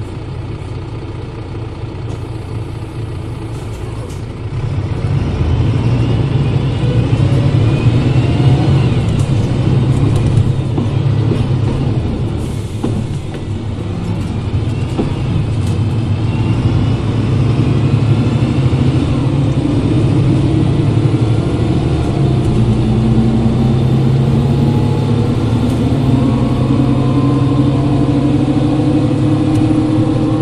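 Mercedes-Benz OM906 LA inline-six turbodiesel of a Citaro O530 bus, heard from the engine bay: running steadily, then about four seconds in it gets much louder under load as the bus pulls away. The engine eases briefly around the middle as the ZF five-speed automatic shifts, then climbs steadily in pitch through the second half. A whine that rises with speed runs over it, the loud differential typical of this bus.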